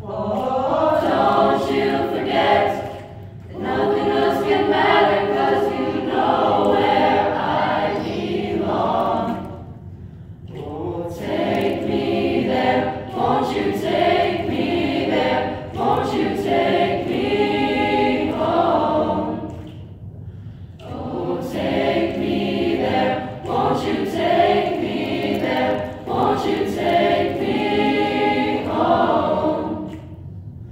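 Mixed choir of teenage voices singing together in long phrases, with brief breaks between phrases.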